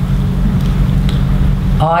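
A steady low rumble of background noise, with a man's voice starting a word near the end.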